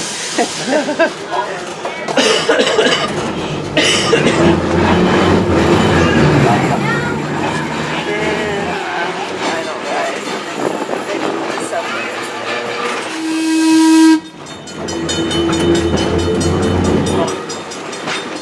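Open-air electric trolley car running on its rails, with a steady rumble and rattle of wheels and motors. About thirteen seconds in, a loud horn blast sounds for about a second and cuts off sharply.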